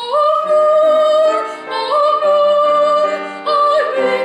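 Female classical singer singing with grand piano accompaniment: two long held high notes of about the same pitch, then a shorter note that drops near the end, with piano chords underneath.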